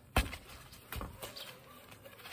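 A football kicked hard on a lawn: one sharp thump about a fifth of a second in, then a softer thud about a second later.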